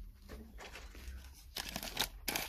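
Packaging rustling and crinkling as small craft items are handled, faint at first and louder for the last half second.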